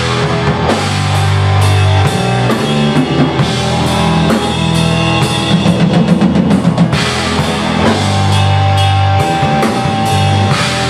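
Live krautrock band playing: electric guitar, bass guitar and drum kit, with held bass notes under steady drumming and a quick run of drum hits about six seconds in.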